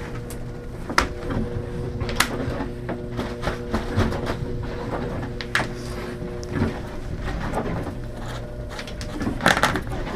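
A freshly drummed pine marten pelt being handled and given a light brushing on a wooden workbench: scattered clicks and soft knocks, over a steady hum of several held tones.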